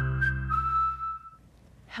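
Closing notes of a children's show theme jingle: a held low chord under a high whistle-like note that slides up, holds, steps down slightly and fades out about a second and a half in.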